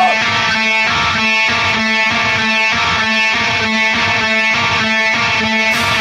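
Metalcore band music: an instrumental passage of electric guitar chords repeated in a steady rhythm, about two and a half strokes a second, with no vocals.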